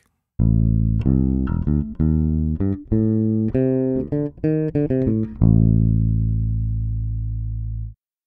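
Electric bass guitar recorded direct through a dbx dB12 active DI box, with no amp or microphone. It plays a riff of short notes, then a long low note that rings for about two and a half seconds and cuts off abruptly.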